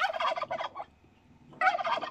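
A turkey gobbling twice: a rapid warbling gobble at the start and a second one near the end.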